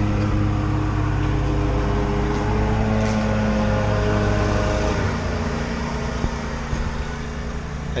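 Small gasoline engine of a lawn-care crew's power equipment running steadily, a low even hum whose pitch rises slightly about three seconds in; its lowest part drops away about five seconds in.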